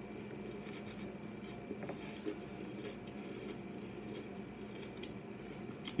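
Faint chewing of a mouthful of crunchy cereal with milk, with a few soft clicks and scrapes, and a metal spoon scooping in a plastic container near the end. A low steady hum runs underneath.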